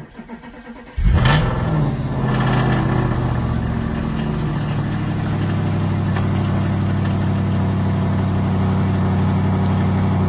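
Audi RS5's 4.2-litre V8 being remote-started. The starter cranks for about a second, then the engine catches with a rev flare that rises and falls, and it settles into a steady idle.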